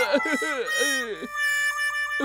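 Cartoon sound effect for a dazed, dizzy head: a warbling pitched tone that falls over and over, then a steady held chime-like tone near the end.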